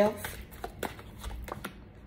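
Tarot cards being shuffled by hand: a quick run of light card snaps and flicks that stops shortly before the end.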